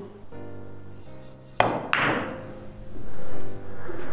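Background music, with one sharp click of a cue tip striking a carom billiard ball about a second and a half in, followed by a brief fading hiss.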